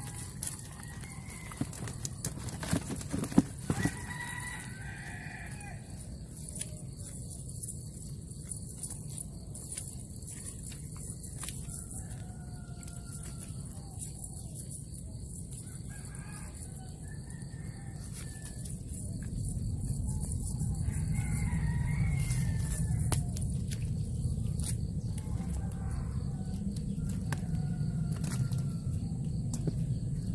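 Roosters crowing again and again in the background, with sharp clicks and rustles of a cast net and fish being handled in the first few seconds. A low, steady rumble grows louder about two-thirds of the way through.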